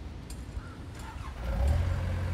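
An engine running, with a low rumble that grows louder about a second and a half in.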